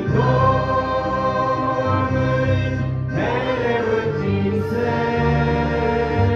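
A Christian song sung by a choir over an instrumental backing, in long held phrases; a new phrase begins about halfway through.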